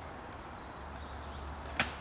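Quiet outdoor background with a faint low rumble, then a single sharp knock near the end.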